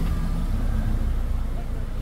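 Ford Mustang's engine running as the car rolls slowly past at low speed, a steady low sound.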